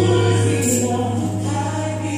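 Gospel music with a choir singing held notes over a steady bass.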